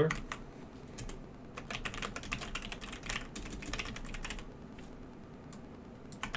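Computer keyboard typing: a quick run of keystrokes starts about a second and a half in and lasts about three seconds, then thins out to a few faint taps.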